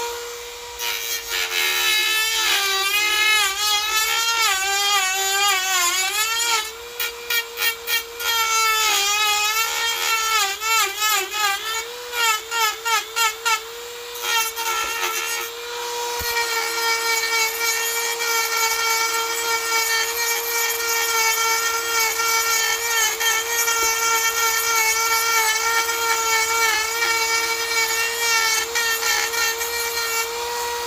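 Dremel 4300 rotary tool running at high speed with a Manpa cutter carving into Arbutus wood. The motor's whine wavers and dips in pitch as the cutter bites, with two spells of rapid pulsing, then holds steady through the second half.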